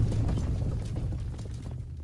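A low, noisy rumble fading away steadily, then cut off abruptly at the end.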